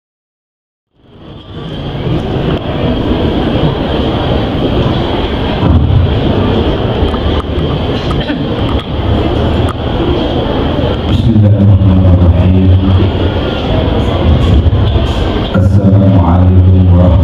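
A man's deep voice chanting in long held notes through a loudspeaker system, starting about eleven seconds in and again near the end, over a loud noisy background with a steady high whine.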